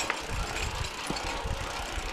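Mountain bikes rolling down a rough, rocky dirt trail: a steady mechanical noise from the bikes over tyre rumble, with a few sharp clicks and rattles.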